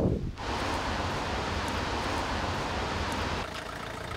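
Steady outdoor background noise with wind on the microphone, a little quieter from about three and a half seconds in.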